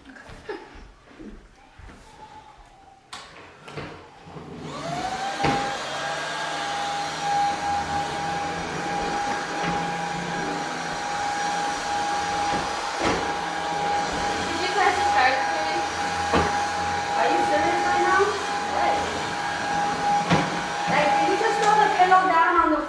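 Cordless stick vacuum cleaner switched on about four seconds in, its motor spinning up quickly to a steady high whine over a loud hiss, then running steadily as it is pushed across the floor. Before it starts there are only a few light knocks.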